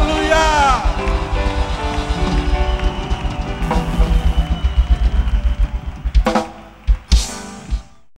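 Live gospel band music: a male voice sings a gliding, held note in the first second over a fast drum-kit beat. About six seconds in the music drops away, and a few last loud hits sound before it ends.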